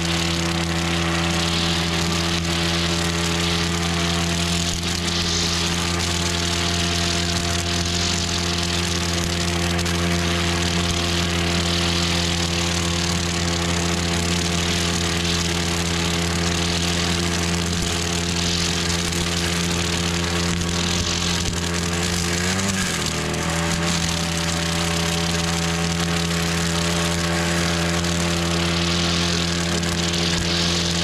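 Brush cutter engine running steadily at high speed while its metal blade cuts through grass and weeds. About 23 seconds in, the engine speed dips briefly and picks up again.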